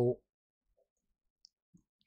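The end of a spoken word, then near silence broken by one faint click about a second and a half in.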